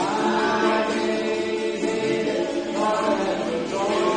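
A small group of voices singing a worship song together, with strummed ukuleles underneath. The voices come in just as it begins, pause briefly near the end, and start a new line.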